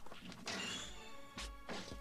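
Faint animated-film soundtrack: music with two sudden hits, one about half a second in and another a little past the middle.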